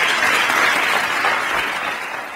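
Audience applauding, loud and steady, beginning to die down near the end.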